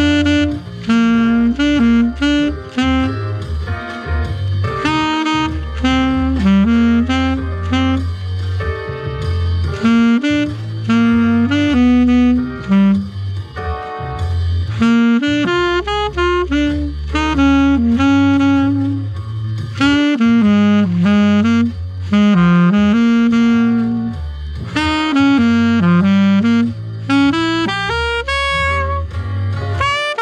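Alto saxophone playing a blues rhythm exercise: short phrases of quick notes separated by brief pauses for breath.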